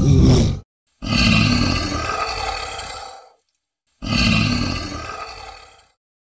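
A Komodo dragon's call, given as an animal roar sound effect. A short burst comes right at the start, then two long roars follow, each loud at first and fading out over two to three seconds.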